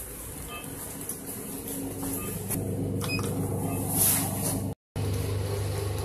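Steady low machine hum of a lift, building up over the first couple of seconds. There is a brief noisy burst about four seconds in and a moment of complete silence just before five seconds, after which the hum goes on.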